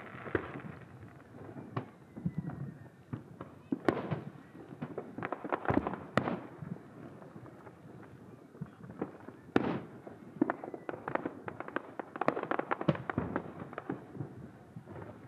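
Aerial fireworks display: a string of shell bursts and sharp pops at irregular intervals, thickening into quick clusters of reports about halfway through and again near the end.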